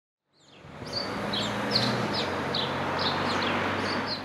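Outdoor background noise with a steady low hum, fading in over the first second. A small bird chirps repeatedly over it, about two to three short high chirps a second.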